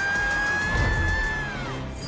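Cartoon theme song: one long, high sung note held over the backing music, falling away near the end.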